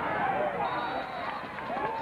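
Crowd of football spectators shouting and calling out over one another as a play ends in a tackle.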